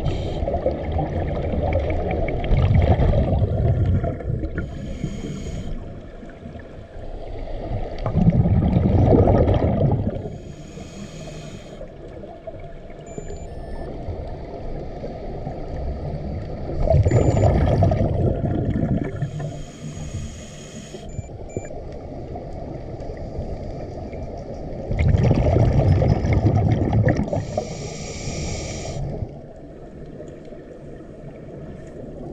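Scuba regulator breathing underwater, slow and regular. Each breath is a hissing inhale through the regulator, followed by a loud, low rumble of exhaust bubbles. Four breaths come about eight seconds apart.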